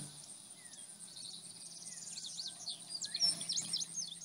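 Faint outdoor ambience of small birds chirping, with a steady high insect drone underneath; the chirps grow busier in the second half.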